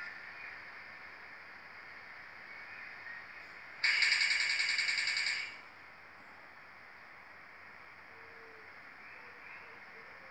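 Steady hiss of an old videotape playing back through a TV, with a loud burst of buzzing static lasting about a second and a half, starting around four seconds in, where the tape cuts from one recording to the next.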